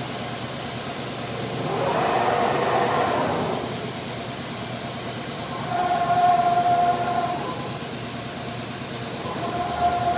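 A CNC router's motors running: a steady hum, a whooshing swell about two seconds in, then a steady whine with overtones that holds for about a second and comes back near the end.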